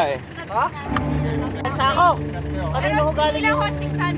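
A vehicle's engine running with a steady low hum, which comes in about a second in.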